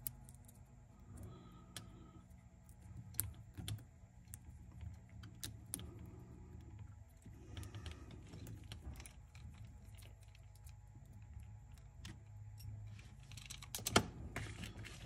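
Irregular small clicks and taps of metal parts of a cassette deck's tape transport being handled and fitted by hand, over a faint steady low hum.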